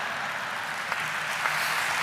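Large audience applauding, a steady dense clatter of many hands.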